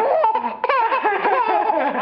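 Six-month-old baby laughing in a run of short, high giggles that break off and start again many times a second.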